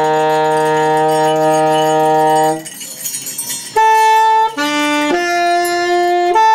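Alto saxophone holding one long low note that breaks off about two and a half seconds in. After a short quieter stretch, a string of separate pitched notes starts near four seconds, each changing pitch every half second or so, in a small ensemble's free improvisation.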